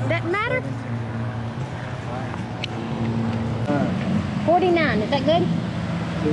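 Unclear voices calling out, briefly near the start and again for about two seconds past the middle, over a steady low engine-like hum.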